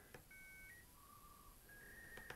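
Faint short steady tones at changing pitches, one or two at a time. This is the test video's soundtrack playing through the Sony Vaio P11Z's small built-in laptop speakers.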